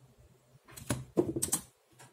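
Plastic Pyraminx puzzle being turned, with quick clicks, then a cluster of louder knocks about a second in as the puzzle is set down on the mat and the hands slap the pads of a speedcubing timer to stop it.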